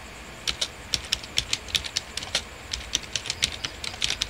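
Typing on a computer keyboard: a quick, irregular run of key clicks, several a second, starting about half a second in.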